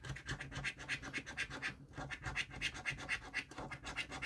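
A coin scratching the latex coating off a paper scratchcard in quick, rhythmic back-and-forth strokes, with a brief pause about two seconds in.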